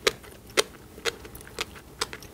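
Close-miked chewing of a mouthful of tobiko (flying fish roe), the small eggs popping and crunching between the teeth in crisp clicks about twice a second.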